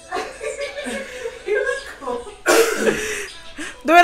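Quiet talk and laughter between a man and a woman, with a short breathy burst, like a cough, about two and a half seconds in.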